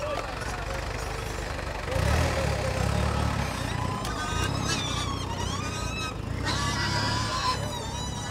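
Outdoor livestock-fair ambience: background voices and a few high-pitched calls over a low rumble that comes in about two seconds in and holds for several seconds.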